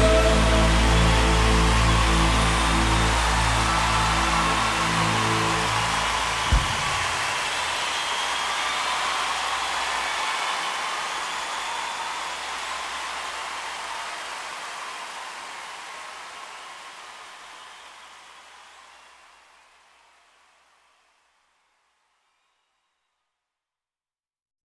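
A live band holds the song's final chord, which ends with one sharp hit about six and a half seconds in. A stadium crowd's cheering and applause then carries on and fades out to silence near the end.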